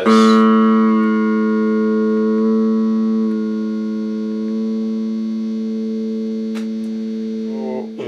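Single note plucked on an Epiphone Les Paul electric guitar, sounding an A, ringing on and fading slowly for about eight seconds.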